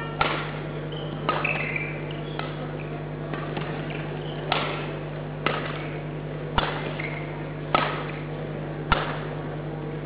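Badminton rackets striking a shuttlecock back and forth in a rally, nine sharp hits about a second apart, the last three the loudest. A steady low hum runs underneath.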